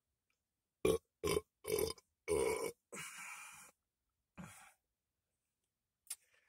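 A man belching in a run of short bursts, the longest and loudest about two and a half seconds in, and a last faint one near the end.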